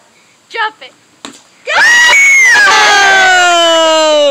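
A single sharp knock about a second in, then a long, loud scream from one voice, starting a little before halfway and held with its pitch slowly falling.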